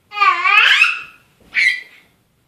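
A young child's high-pitched squeal, long and rising in pitch, then a second shorter squeal about a second and a half in.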